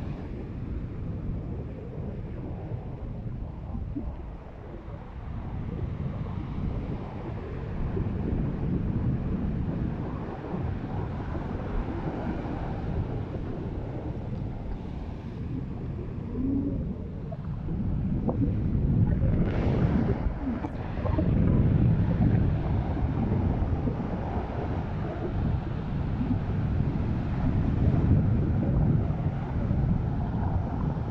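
Surf breaking and washing up a black volcanic sand beach, with wind buffeting the microphone. The noise swells and eases with each set of waves and is loudest about two-thirds of the way through.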